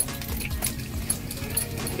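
Spinning reel clicking irregularly as a hooked small fish is reeled in with the drag set too loose, over background music.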